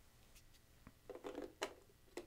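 Canon LP-E6 camera battery being handled and fitted onto a plastic battery plate: faint scraping and small clicks, the sharpest about a second and a half in.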